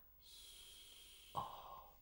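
A faint, breathy exhale from a person, lasting about a second, followed by a short, duller sound just past the middle.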